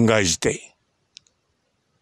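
A voice speaking briefly at the start, then dead silence broken by one short, faint click a little past a second in.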